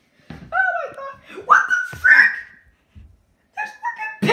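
A person's high-pitched, wordless voice making short squeaky calls that slide up and down in pitch, with a pause about three-quarters of the way through.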